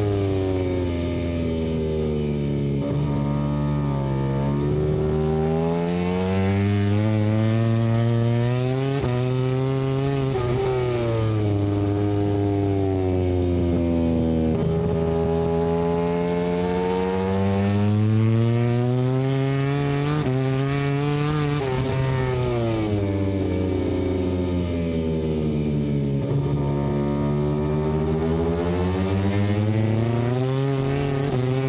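Aprilia RS-GP MotoGP V4 engine at racing speed, rising in pitch through the gears on the straights and dropping in long sweeps on braking for the corners, about five times. Wind rush on the shoulder-mounted microphone runs underneath.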